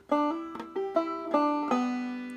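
Five-string banjo played clawhammer style: a short melodic phrase of about seven plucked notes, the last, about 1.7 s in, left to ring out and fade.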